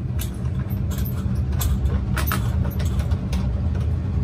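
Steady low rumble of a laboratory fume hood's ventilation airflow, with a few light clicks and taps of glassware as a reagent bottle is opened and a glass dropper pipette is handled.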